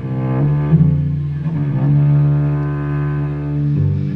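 A carbon-fibre cello played with the bow: long, sustained low notes that change pitch a few times.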